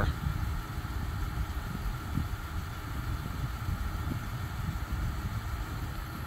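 A car engine idling steadily, a low rumble.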